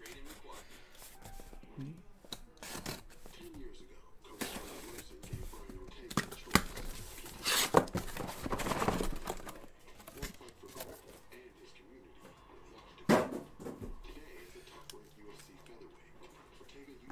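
Utility knife slitting packing tape on a cardboard case, then the cardboard flaps being ripped open and boxes handled: a string of scrapes and tearing sounds, the loudest rips about halfway through and again about 13 seconds in.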